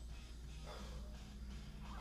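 Faint breathing of a kettlebell lifter holding the bell in the rack between one-arm jerks, a couple of short breaths over a steady low hum.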